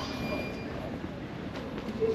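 Busy airport security-checkpoint hubbub: a steady low rumble of ventilation and crowd with indistinct voices, and a brief faint high tone just after the start.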